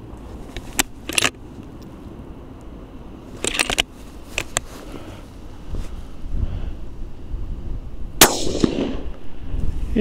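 Suppressed bolt-action rifle: a few sharp metallic clicks of the bolt being cycled in the first four seconds, then one shot about eight seconds in, its report dying away within a second. It is a zeroing shot at a target 100 yards off.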